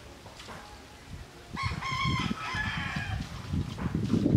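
A rooster crowing once, a call of about a second and a half starting a little before halfway, over low rumbling wind noise on the microphone.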